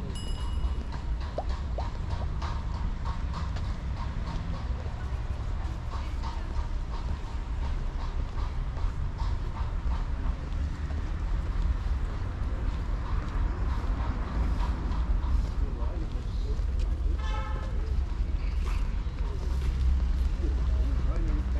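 Outdoor street ambience on a walk: scattered voices of passers-by and traffic over a steady low rumble, with a brief pitched call about three-quarters of the way through.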